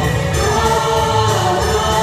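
A duet sung into handheld microphones over steady recorded backing music, the vocals amplified on stage.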